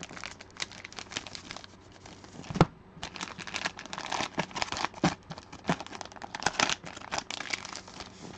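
Plastic trading-card bundle-pack pouches crinkling and tearing as they are handled and opened, in many short crackles, with one sharper knock about two and a half seconds in.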